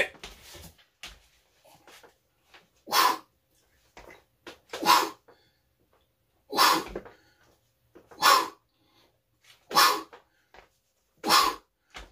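A man's forceful breaths, one sharp exhale with each rep of an incline dumbbell press, six in all at an even pace of about one every one and a half seconds.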